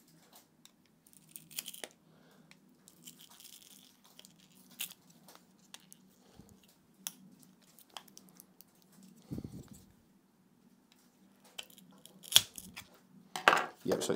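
A pry tool prising a glued-and-taped lithium battery cell out of a plastic headset-strap arm: faint, scattered scrapes and small clicks with crinkling as the glue and tape tear free, and a sharper click near the end.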